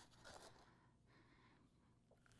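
Near silence: room tone, with a faint soft rustle in the first half second.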